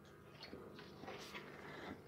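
Faint handling noise: a few soft clicks and rustles as a power cord and small hand tools are picked up and handled, over a faint steady hum.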